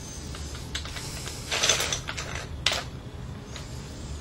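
Small plastic toy pieces clicking and rattling as a toddler handles them: a few sharp clicks and two short rattling scrapes.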